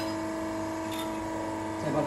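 Steady electric hum and whine of a stainless steel coil winding machine's drive, a constant multi-pitched tone, with a faint click about a second in.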